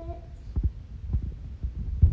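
A handful of soft, low thumps at irregular intervals, with a brief bit of a child's voice trailing off right at the start.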